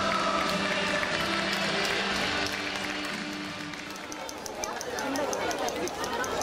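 Football supporters singing a chant in long held notes, with voices over it. A few seconds in this gives way to people talking nearby and a fast, regular high ticking of about five a second.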